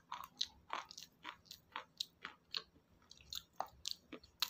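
Close-miked mouth chewing and crunching of a hard, crunchy food: short, sharp, irregular crunches, about four a second.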